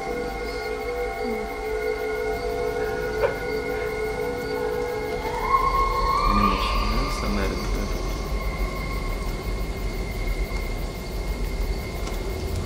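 Film teaser soundtrack: layered, sustained droning tones, with a higher tone that slides up and holds about five seconds in.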